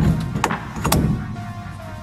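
Background music, with a sharp knock at the start and two shorter clicks within the first second.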